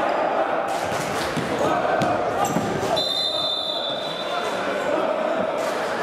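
Futsal ball kicks and players' footfalls knocking on a wooden sports-hall floor. About three seconds in, a referee's whistle blows one steady note for about a second and a half, stopping play for a foul.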